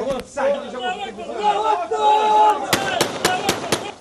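A group of men shouting and chattering, one voice holding a long shout about halfway through, then a quick run of about half a dozen rifle shots in the last second or so.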